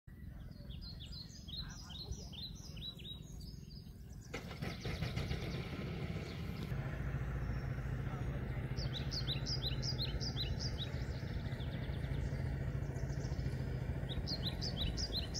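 A bird calling with runs of short, quickly repeated falling chirps, one run at the start and another in the second half. A low steady drone with a faint hum rises beneath it about four seconds in.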